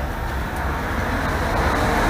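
Steady outdoor background noise: a low rumble with an even hiss, of the kind made by road traffic or wind on the microphone.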